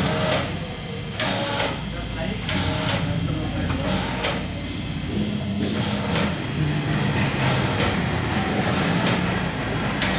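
Indistinct voices talking over steady background noise, with several short sharp clicks scattered through.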